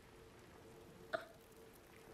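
A person's single short gasp in the throat about a second in, over a faint steady low hum.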